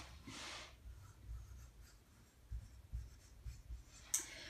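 Dry-erase marker writing on a whiteboard: faint scratchy strokes, the clearest one in the first second, with soft knocks of the marker against the board.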